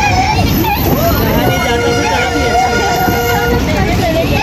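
Train horn sounding one steady chord for about two seconds, starting a second and a half in, over the rumble of a moving passenger train. Voices chatter in the carriage.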